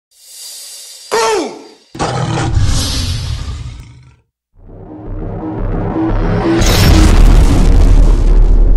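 Logo-intro sound design and music: a short sound falling in pitch about a second in, then a sudden heavy hit just before two seconds that rings out. After a brief gap, music with a heavy bass comes in and builds up, loud from near seven seconds.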